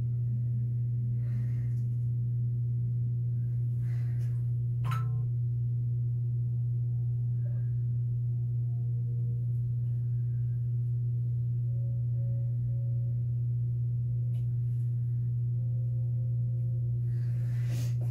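A steady low hum runs unchanged throughout, with a few faint soft clicks, the clearest about five seconds in.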